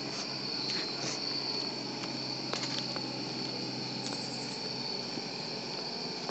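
Crickets chirping in a steady, high-pitched chorus, with a faint low steady hum underneath.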